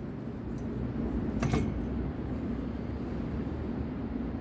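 Hinged steel barrier strut being lowered by hand, with one short metal-on-metal sound about a second and a half in, over a steady low rumble.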